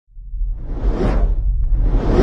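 Cinematic whoosh sound effect over a deep rumble, rising out of silence and swelling to a peak about a second in, with a second whoosh starting at the end.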